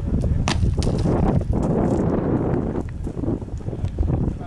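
Wind buffeting the microphone as a heavy, unsteady rumble, with a few sharp clicks or knocks.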